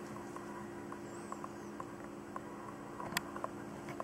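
Quiet, steady low hum with a few faint ticks and one sharper click about three seconds in.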